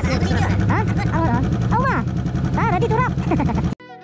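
Motorcycle engine idling with a low, steady rumble under people talking. Just before the end the sound cuts off abruptly and music takes over.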